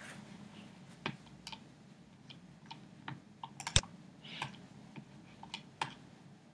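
Irregular clicks and taps of a computer keyboard and mouse, about a dozen scattered strokes with a quick cluster of sharper clicks midway and another near the end.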